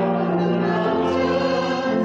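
Church choir singing in held notes, the voices moving to a new note about a second in and again near the end.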